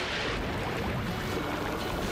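Steady rain falling and splashing on water and a wet surface.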